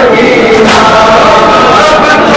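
A group of men chanting a noha (Shia Muharram lament) together, loud and rough. A sharp slap of hands striking chests (matam) lands about two-thirds of a second in, with more near the end.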